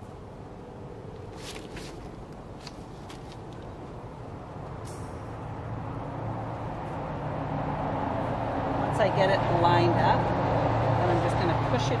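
A few light clicks and rattles of wire fencing being handled in the first few seconds, then a low steady drone that grows louder through the second half.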